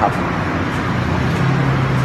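Road traffic noise with a motor vehicle engine's steady low hum, which grows stronger a little past halfway.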